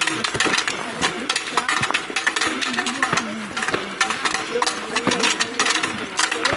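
Footsteps crunching on loose stones and gravel, a dense irregular run of crunches, with several people talking indistinctly.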